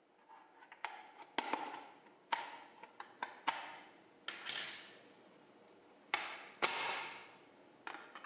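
Plastic pry tool working around the edge of a Cisco Meraki MR16 access point's back panel as its locking clips release: a scattered series of sharp clicks and snaps with short scraping rustles between them.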